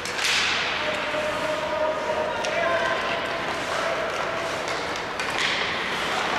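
Ice hockey play echoing in an arena: skates scraping hard on the ice twice, sharp clacks of sticks on the puck, and distant shouts from players on the ice.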